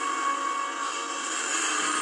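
Film trailer soundtrack playing through a screen's speakers during a TIE fighter spacecraft sequence: a steady, sustained engine-like sound with held tones.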